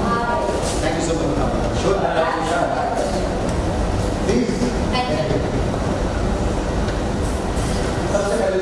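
Brief, indistinct voices of people greeting each other, over a steady low rumble.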